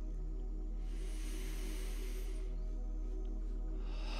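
Slow ambient drone music under one long, soft, audible deep breath from about one to two and a half seconds in, with a second breath beginning at the very end.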